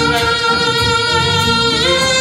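Saxophone holding one long note that slides up to a higher note near the end, playing a gospel tune over a low accompaniment.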